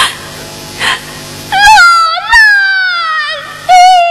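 Yue opera music: two light percussion strikes over quiet accompaniment, then about a second and a half in, a high female voice enters with long sliding held notes that bend up and down, breaking off briefly twice.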